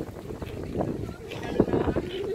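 Wind buffeting the microphone in uneven gusts, with people talking in the background.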